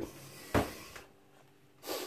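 A single knock about half a second in as a plastic food container is set down on a stainless steel kitchen counter, followed by a short breath near the end.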